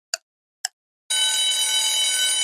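Quiz countdown-timer sound effect: two short ticks about half a second apart, then a loud steady alarm-bell ring starting about a second in, signalling that time is up.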